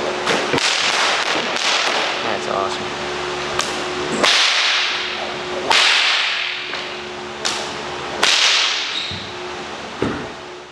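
A whip being swung and lashed: several sudden swishes, the loudest about four, six and eight seconds in, over a steady hiss and low hum.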